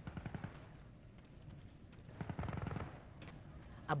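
Machine-gun fire in two quiet, rapid bursts: one right at the start and a second about two seconds in.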